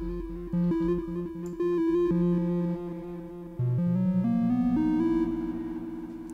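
Software synthesizer patch in Bitwig's Grid: a triangle-wave oscillator through a modulated delay fed back into itself, giving short repeated notes with echoing repeats. About halfway through the pitch drops and then steps back up.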